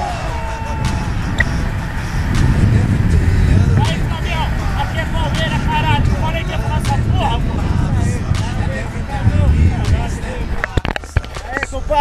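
Wind buffeting a camera microphone during a tandem parachute descent under an open canopy, a steady uneven rumble, with a few sharp knocks near the end.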